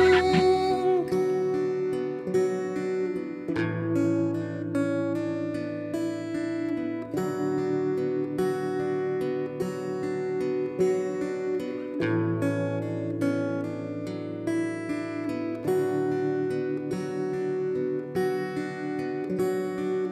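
Acoustic guitar playing an instrumental passage of the song: a steady run of plucked notes over a repeating chord pattern that changes about every four seconds, with no singing.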